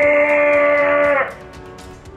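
A person's voice holding one steady, drawn-out note for about a second and a quarter, then breaking off. Background music with a light beat continues under it and after it.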